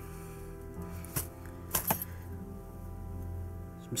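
Soft background music, with a few short clicks and clinks between one and two seconds in as items are lifted out of a metal tool box.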